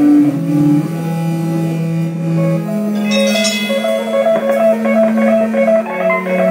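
Live rock band playing: an electric guitar holds long notes, then picks out a repeated figure of short notes from about three seconds in, over bass and drums.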